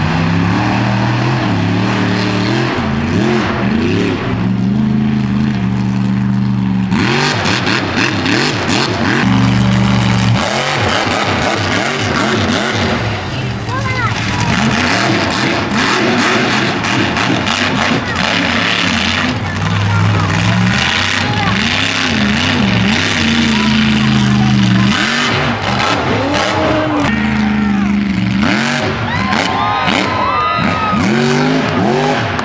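A mega truck's engine revving hard again and again, its pitch rising and falling, with crowd noise and shouting over it.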